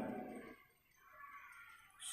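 Faint, intermittent scratching and tapping of chalk writing on a blackboard, with near silence between strokes.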